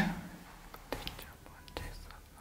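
A man's voice trailing off at the start, then a quiet room with a few faint clicks.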